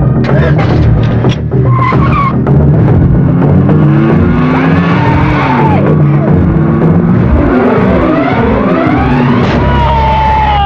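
Film sound effects of a car driven hard, with the engine revving and tyres squealing, mixed with dramatic music. It all starts suddenly and stays loud.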